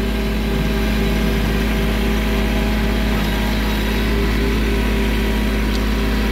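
Compact tractor's engine running at a steady speed, an even, unchanging drone.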